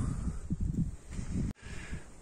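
Irregular low rumbling and rustling of wind and handling on a phone microphone while plastic tailgate trim is worked off its clips. The sound drops out abruptly about one and a half seconds in, at a cut.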